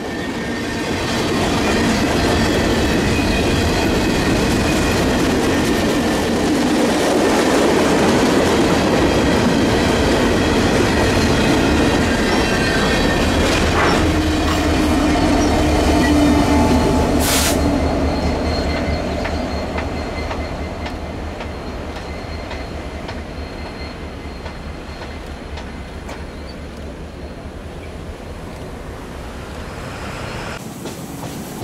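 Freight train rolling past at close range: the steady rumble and clatter of freight cars, with thin high squealing tones from the wheels. The rear distributed-power diesel locomotive, KCS 4006, goes by about halfway through, adding a low engine hum. After that the train fades gradually as it moves away.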